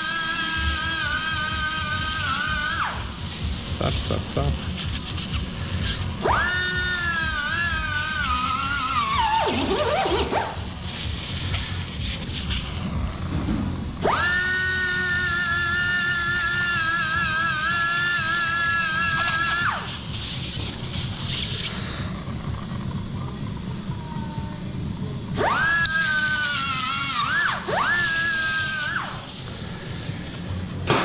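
High-speed surgical burr running in four spells of a few seconds each: a high whine that holds steady, then wavers and falls in pitch as it bites and spins down. It is grinding cartilage off the carpal joint surfaces to prepare them for fusion.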